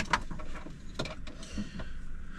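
A few sharp mechanical clicks and knocks of small objects being handled in a truck cab. Two come right at the start and another about a second in.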